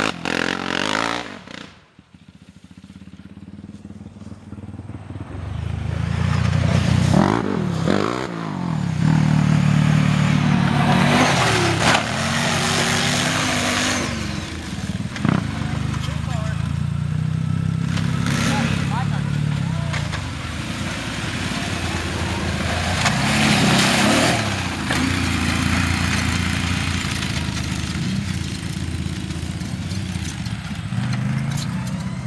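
Sport quad ATV engine revving and running hard on a dirt track, its pitch rising and falling with each throttle burst and gear change. It is faint for the first couple of seconds, grows louder over the next several, then stays loud.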